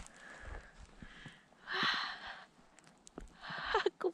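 A person's breathing close to the microphone: two audible breaths, a louder one about two seconds in and another near the end.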